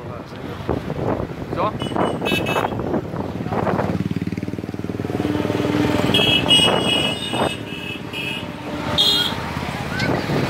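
Road traffic passing close by, with vehicle engines running and several short horn toots: one around two seconds in, a longer run between six and seven and a half seconds, and another near the end.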